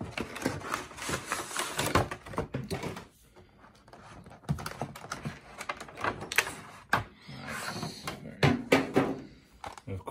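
Cardboard box and clear plastic blister tray handled by hand: crackling and rustling of the plastic with light knocks as the box is opened and the tray lifted out, easing off briefly about three seconds in.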